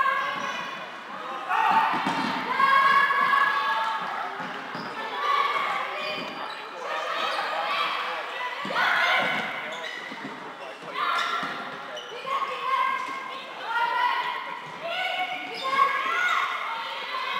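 Indoor floorball play in a large sports hall: players calling and shouting across the court, mixed with the knocks and squeaks of play on the court floor.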